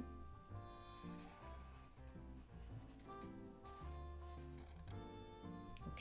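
A felt-tip marker rubbing across paper in drawing strokes, faint, over quiet background music with a low bass.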